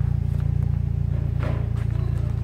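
Turbocharged 2002 Hyundai Tiburon's 2.0-litre four-cylinder engine idling steadily, a low drone heard from inside the cabin.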